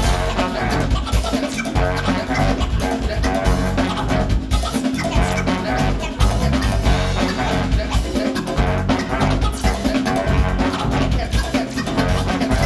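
Live band playing an instrumental groove: drum kit, bass, electric guitar and a horn section of trombone and saxophone, with a steady beat.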